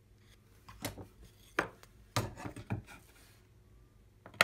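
Handling noise on a workbench: a few light knocks and taps, bunched in the middle, as digital calipers and a small wooden strip are set down on a cutting mat.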